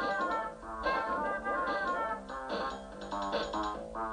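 A tiny keyboard played in quick improvised jazz lines: about three phrases of fast running notes with brief pauses between them.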